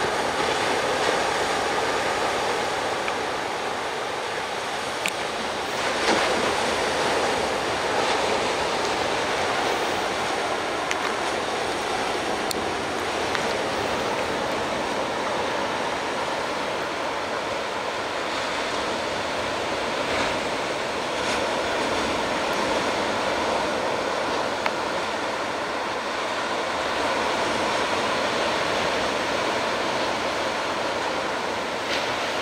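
Ocean surf breaking on a sandy beach: a steady wash of noise that swells a little now and then.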